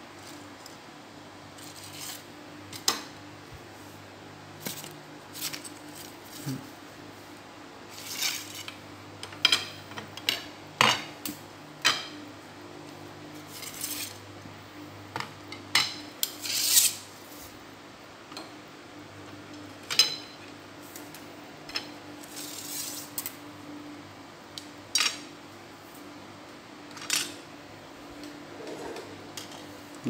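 Carbon sections of a Shimano 5H telescopic hand fishing pole being pulled apart and laid down on a wooden table: irregular clicks, knocks and light clatter, some in quick clusters. A steady low hum runs underneath.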